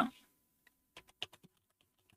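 Computer keyboard keystrokes: a quick, irregular run of about eight key clicks about a second in, typing a login username.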